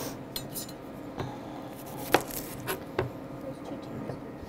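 Kitchen utensils clinking and knocking: a knife and metal tools tapping on a cutting board and pot, about six short sharp clicks at irregular spacing, the loudest a little past two seconds in, over a faint steady hum.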